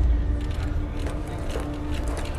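TV drama soundtrack between lines of dialogue: a deep, steady rumble under one held droning tone, score and spaceship ambience.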